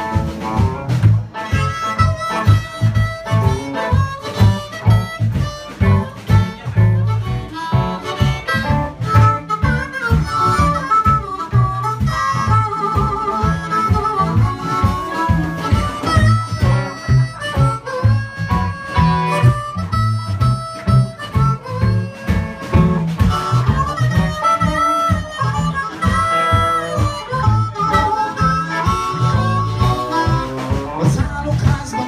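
Live blues band playing without vocals: harmonica played into a microphone leads over electric guitar, bass guitar and a drum kit keeping a steady beat.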